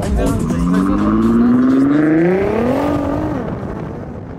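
Car engine accelerating, its pitch climbing steadily for about three seconds, then dropping off and fading away.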